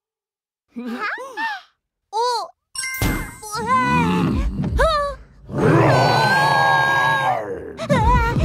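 A cartoon character's short, sliding-pitch startled vocal sounds, then a cartoon Tyrannosaurus roaring over music, the loud roar held for about two seconds near the end.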